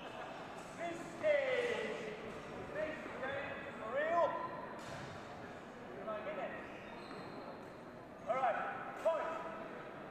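Rubber-soled shoes squeaking on a sports hall floor as fencers move: a longer squeal sliding down in pitch about a second in, another around four seconds, and two short squeaks close together near the end, over the murmur of a crowd in a large hall.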